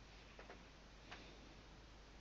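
Near silence: room tone with a few faint clicks, two close together about half a second in and one just after a second.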